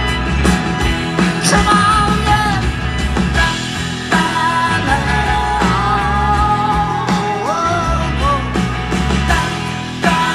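Live guitar and grand piano music with a drawn-out, wavering vocal line and no clear words, coming in about a second and a half in and again from about four seconds.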